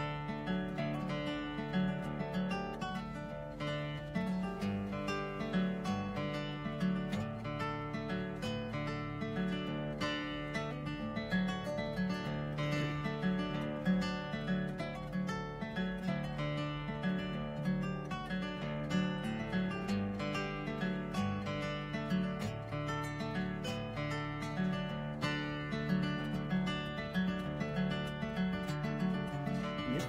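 Solo acoustic guitar playing an instrumental passage of a blues song, with a steady repeating bass pattern under the higher notes, heard inside a car's cabin.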